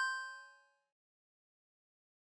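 Bell-like chime sound effect, struck twice in quick succession, its ringing tones fading out within the first second.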